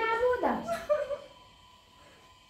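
A woman's voice whimpering and crying in high, wavering tones for about a second, then quiet.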